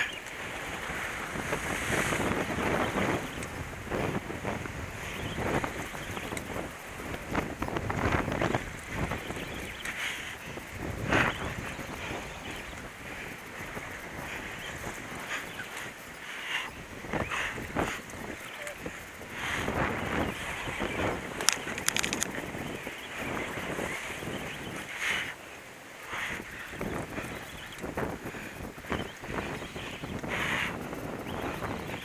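Wind buffeting the microphone in irregular gusts, over the wash of sea waves breaking against the rocks.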